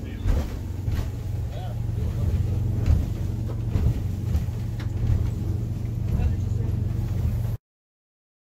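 A boat's engine running steadily, heard from inside the wheelhouse, with some indistinct voice over it; the sound cuts off suddenly near the end.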